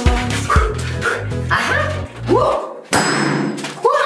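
Upbeat background music with a steady bass rhythm that cuts out about two and a half seconds in, followed by a sudden sharp pop with a brief hiss after it: a large rubber balloon bursting.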